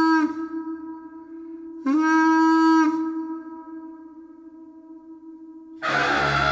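A Māori taonga pūoro wind instrument blown in long held notes on one pitch. One note ends just after the start, and a second loud note slides up into pitch about two seconds in and holds for about a second, over a softer steady tone at the same pitch. Right at the end a louder, fuller, breathier sound comes in.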